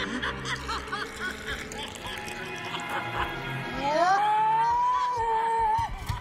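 An old woman cackling in short repeated bursts over a horror film score. About four seconds in, a long high note rises and holds for nearly two seconds.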